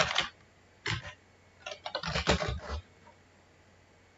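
Computer keyboard typing in short bursts, with a brief pause in the middle. The typing stops about three seconds in.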